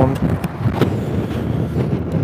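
Steady wind rush and road noise of a Honda Gold Wing cruising at road speed, picked up by a helmet-mounted microphone, with a faint click a little under a second in.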